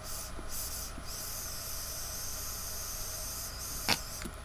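Drawing on a cartridge vape pen: a few short hissing puffs, then one long hissing draw from about a second in, ending with a brief sharp sound just before the end.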